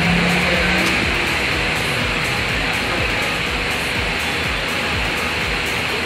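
A steady, even hiss, with music playing faintly beneath it.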